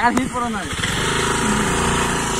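Honda scooter's small single-cylinder engine idling with a steady low rumble.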